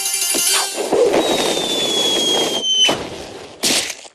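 Cartoon score music with a whistle sliding down in pitch over about a second and a half, then two short hits near the end, the second louder.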